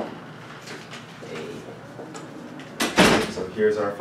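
Dry-erase marker writing on a whiteboard: faint scratchy strokes and taps. About three seconds in comes one loud, brief burst of noise, and then a man's voice starts.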